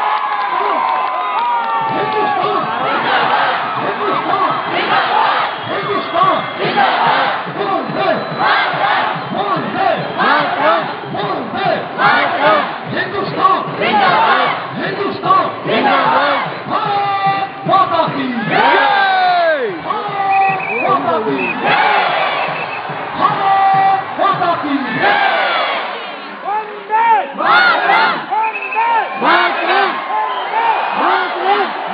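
Large crowd of spectators shouting and cheering together, many voices at once, in repeated loud shouts.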